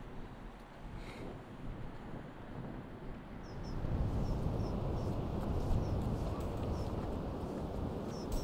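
Wind blowing on the microphone outdoors, louder from about halfway through, with a faint bird chirping repeatedly in short high notes.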